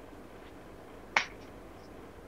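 A single short click about a second in, over faint room tone.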